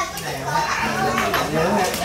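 Indistinct chatter of several people talking over one another, with no single voice standing out.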